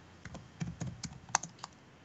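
Typing on a computer keyboard: a quick, irregular run of keystroke clicks that stops near the end.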